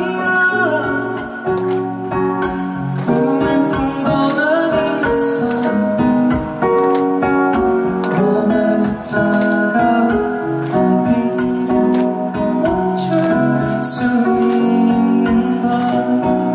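Male vocalist singing live into a handheld microphone, with instrumental backing music.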